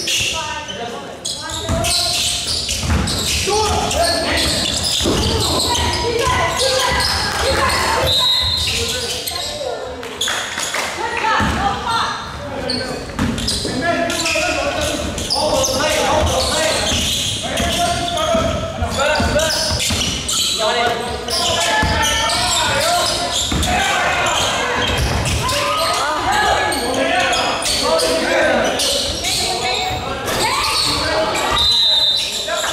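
Basketball game in a gym: a ball bouncing and thudding on the court, with players and spectators talking and calling out throughout, all echoing in the large hall.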